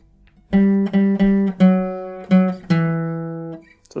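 Acoustic guitar, single notes picked with a plectrum on the D string: six notes in a three-two-one grouping, stepping down from the fifth fret through the fourth to the second fret. The last note rings on and fades.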